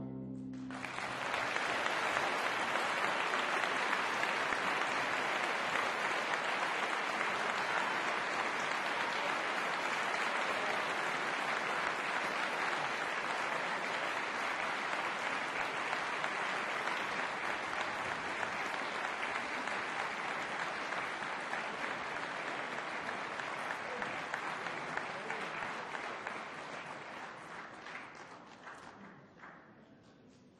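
Audience applauding in a concert hall, breaking out within the first second as the piano trio's music stops. The clapping holds steady, then thins out and fades near the end.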